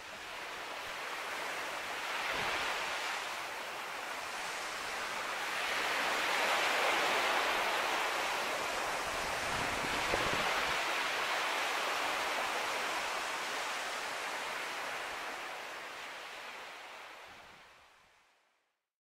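Small waves washing onto a sandy beach, the surf swelling and easing in a few slow surges and fading out near the end.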